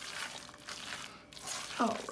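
Bare hand squishing and mashing a wet salmon croquette mixture of canned salmon, egg, chopped onion and bell pepper, and cornmeal in a pot: soft, wet squelching.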